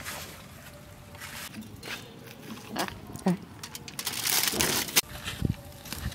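Aluminium foil crinkling in short bursts as hands press it down around a metal tray, with a louder rustle about four seconds in.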